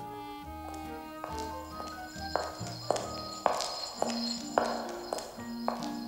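Cartoon background music with a guard's footsteps: sharp, evenly paced steps about every 0.6 seconds, starting about two seconds in.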